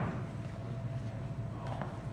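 Steady low room hum in a gym, with the echo of a thud dying away at the start and a faint knock near the end as children shift on the rubber floor.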